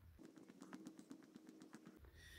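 Near silence, with a run of faint, quick ticks at about eight to ten a second and a faint low hum underneath.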